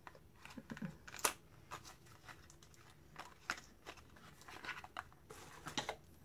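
Small cardboard cosmetics box being opened by hand and an eyeshadow primer tube slid out: faint scattered crinkles, taps and scrapes, with a sharper crackle about a second in.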